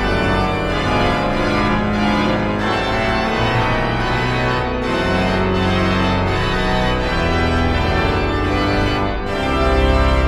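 Hauptwerk virtual pipe organ, using the sample set of the organ in Düren, playing a piece in full held chords over deep bass notes. It swells louder near the end.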